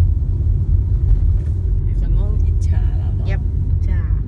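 Steady low rumble of a car driving slowly on a paved road, heard from inside the cabin. Brief bits of voice come in over it in the second half.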